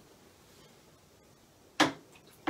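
A hand spray bottle squirting water once onto wet watercolour paper, a short sharp hiss near the end; before it only faint room tone.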